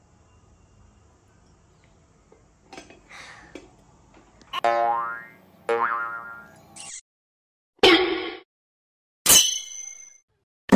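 Cartoon 'boing' sound effects: two springy pitched twangs about a second apart, the second sliding upward, followed near the end by two short, loud sound bursts.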